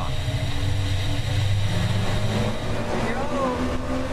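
Motorboat engine running hard as the boat gets under way, a steady low rumble with the rush of water and wind beneath it.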